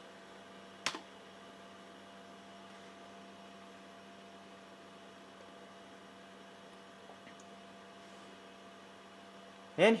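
Low, steady hum of an eMachines T1090 desktop computer running as it starts to boot from USB. One sharp click about a second in, typical of the key press that confirms the boot choice.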